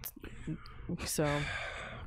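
A person sighing into a close microphone: a drawn-out breath let out for about a second after a spoken "so", a sign of tiredness.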